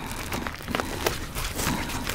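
Plastic shrink-wrap on a vinyl record sleeve crinkling and crackling as it is worked loose by hand, a scatter of small irregular clicks.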